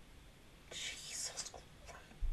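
A person whispering for about a second, breathy and without voiced tone, with a shorter breathy sound just after.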